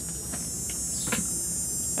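Steady background hum with a high-pitched buzz over it, and a faint tick about a second in.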